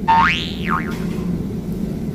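A comedy sound effect: one whistle-like tone that glides up and back down within the first second, over a low steady background.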